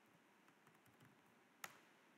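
Near silence with faint computer keyboard keystrokes and one sharper key click about one and a half seconds in.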